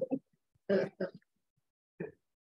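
A man's laughter trailing off, then a throat clearing in two short bursts a little under a second in.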